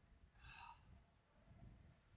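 Near silence: a faint low rumble, with one brief faint pitched sound about half a second in.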